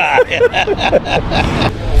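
Men laughing heartily in short repeated bursts, over a steady low rumble.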